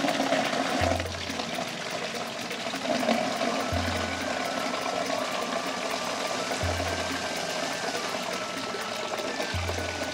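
Water from a tap pouring into a plastic bucket, a steady splashing rush. Background music plays under it, with a deep bass note about every three seconds.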